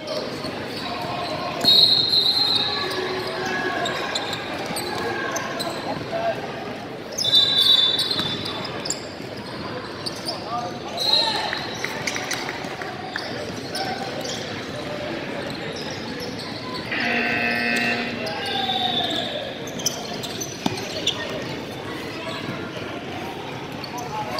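Basketball bouncing on a hardwood gym floor amid a constant echoing chatter of players and spectators, with a few short, high squeaks.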